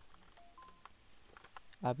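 Faint computer keyboard key presses as text is deleted and retyped, with two short faint beeps just before the first second, the second higher in pitch than the first.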